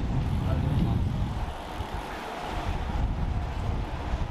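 Street noise: a steady low rumble with voices of passers-by in the background.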